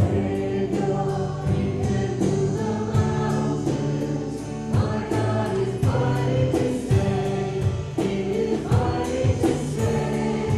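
Voices singing a worship song with a church band, drums marking a steady beat.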